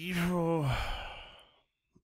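A man's long voiced sigh, a drawn-out 'hmm' as he weighs his answer, holding its pitch and then falling away into breath after about a second and a half.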